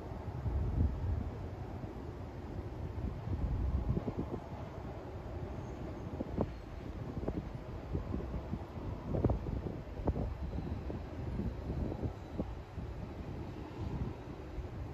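Wind rumbling on the microphone in uneven gusts, with a few brief knocks or crackles in the second half.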